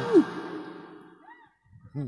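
A person's voice through a PA microphone, falling in pitch and trailing off over the first second. A short pause follows, then a brief vocal sound near the end.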